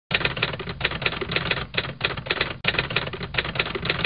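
Typewriter keystroke sound effect: rapid clacking keystrokes in quick runs, broken by two short pauses.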